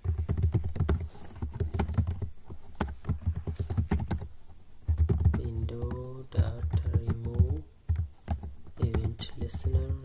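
Typing on a computer keyboard: rapid keystroke clicks in quick runs with brief pauses.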